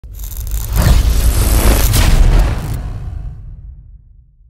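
Logo-intro sound effect: a deep boom that swells within the first second, with two sharp hits about a second apart, then dies away gradually over the last second and a half.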